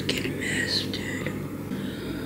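A girl whispering close to the microphone, with a steady low hum underneath.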